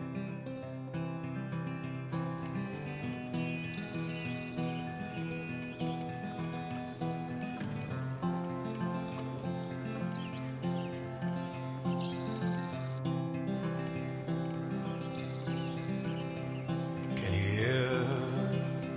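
Instrumental background music: a steady, evenly paced pattern of repeated low notes with higher notes over it. About a second before the end, a brief sliding sound cuts across the music.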